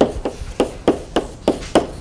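Chalk tapping on a blackboard while writing, a sharp tap about three times a second.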